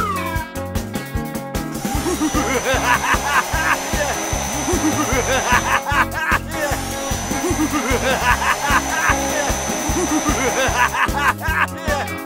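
Cartoon air-blower sound effect: a high, steady whine heard twice, about four seconds each time, over upbeat background music with a steady beat.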